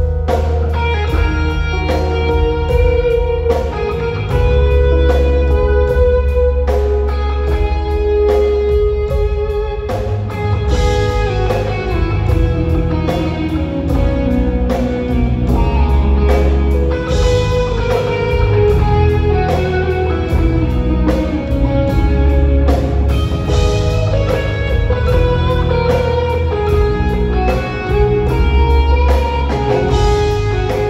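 A live band playing a slow, melodic instrumental, with the lead electric guitar carrying sustained melody notes over bass, drums and keyboards.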